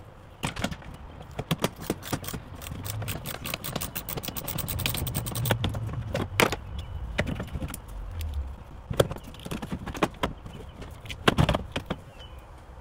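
Metal clicking, knocking and rattling from a Kawasaki jet ski's steering handlebar assembly as it is wrenched up and down to free it: a dense run of clinks through the first half, then a few sharper knocks, two of the loudest near the end.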